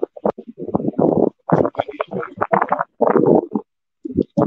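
A man talking in short bursts with brief pauses, close to the microphone; the words are not clear enough to make out.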